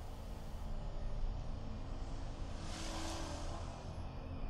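Low, steady rumbling drone from a horror film's sound design, with a hissing whoosh that swells and fades about three seconds in.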